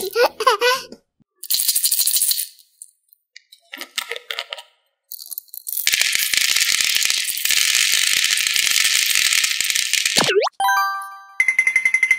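Small round candies pouring out of a glass jar and rattling onto a plastic tray, a dense clatter of many tiny clicks lasting about four seconds from about six seconds in, after a few shorter rattles. Near the end, a rising cartoon sound effect and a run of electronic beeping tones.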